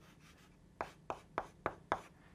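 Chalk writing on a blackboard: after a quiet start, about five short taps and scrapes of chalk in quick succession through the second half.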